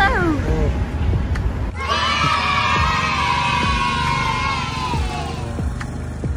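A woman's voice: a short excited "wow" at the start, then a long high cry of delight that slowly falls in pitch over about three seconds, over a low steady rumble.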